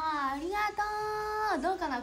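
A young woman's voice singing a short phrase, with a note held steady for under a second in the middle.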